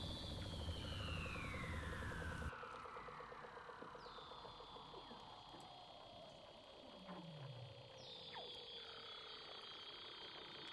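Faint seal calls: long whistles gliding slowly downward in pitch and overlapping, with new high calls starting about four and eight seconds in.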